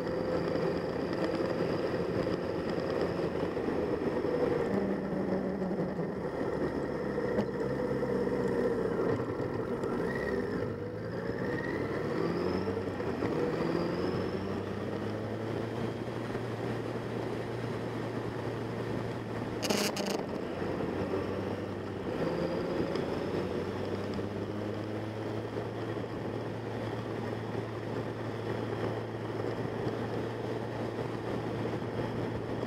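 Motorcycle engine running on the move, with road and wind noise; its pitch shifts with a few rising glides about ten to fourteen seconds in, then settles to a steady lower note. A single sharp click about twenty seconds in.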